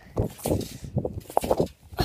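Children bouncing on a trampoline: a run of irregular thuds and rustles, with the hand-held phone being jostled.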